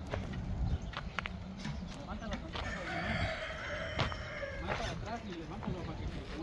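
A rooster crowing: one long call starting about two and a half seconds in and lasting a little over two seconds, with a few sharp knocks around it, the loudest about four seconds in.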